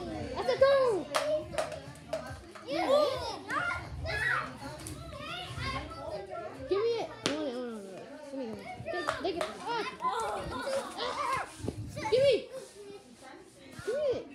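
Children's excited voices, shouting and squealing over each other, with scattered short sharp knocks.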